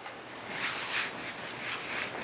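Soft fabric rustling from a weighted arm sleeve being pulled on and adjusted on the forearm, in a couple of brief swells.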